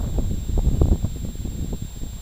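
Wind buffeting the camera's microphone, a steady low rumble, with faint rustling from the camera being handled.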